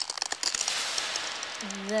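Dense crinkling, crackling noise like crumpled aluminium foil: the sound-effect of foil hats jamming a mind reader. A voice begins near the end.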